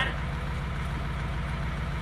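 Bus engine idling: a steady low rumble with an even pulse.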